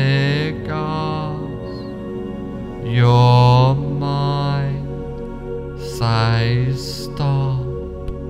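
Meditation background music: a low, wordless chanted voice holding long notes over a steady drone, in phrases of about a second, the loudest about three seconds in.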